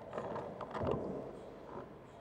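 A sharp click as a handheld microphone comes on, followed by irregular rustling handling noise from the microphone.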